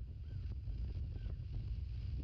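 Wind buffeting an outdoor microphone with a steady low rumble. Two faint, short chirps from a small bird come through over it.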